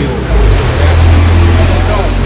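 A motor vehicle's engine running close by: a loud, steady low rumble, with voices faintly underneath.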